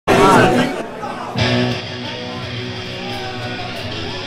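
Live rock band playing loud with electric guitar. The sound starts abruptly with a loud voice over the band, and about one and a half seconds in a new guitar chord is struck and left ringing.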